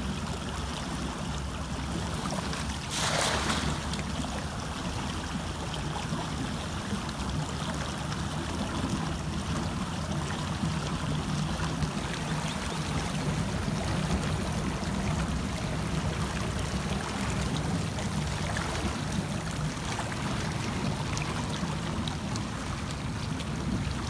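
A hand-thrown cast net splashing down on shallow water about three seconds in, over steady lapping water and a low rumble.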